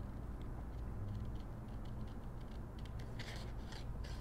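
Small pointed scissors snipping through patterned scrapbook paper in quick short cuts: faint at first, then a denser, louder run of snips near the end.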